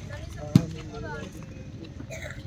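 A single sharp slap of a hand striking a leather volleyball about half a second in, over the chatter of spectators' voices.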